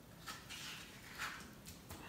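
Faint scraping and soft squelching of a metal spoon scooping ripe avocado flesh out of its skin and into a stainless steel bowl, in several short strokes.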